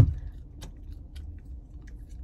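Low steady rumble inside a parked car's cabin, with a knock right at the start and a few faint clicks after it.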